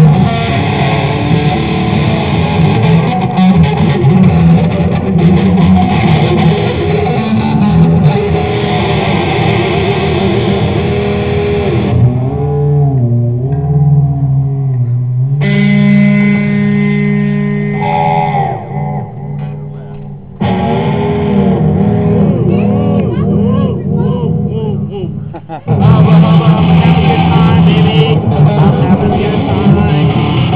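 Electric guitar played through an amplifier, rock-style, with bent, wavering notes. It thins out twice in the middle and comes back loud for the last few seconds.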